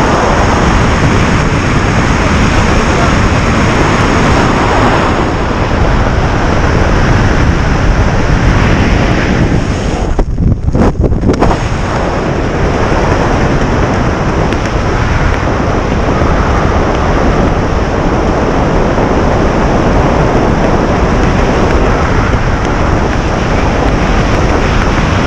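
Wind rushing over the wrist-mounted camera's microphone as a tandem skydiving pair descend under the parachute. The noise is loud and steady, with a brief dip and flutter about ten seconds in.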